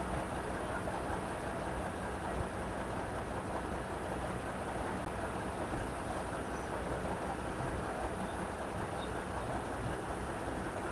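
Steady, even rumble of vehicle engines, unchanging with no distinct events.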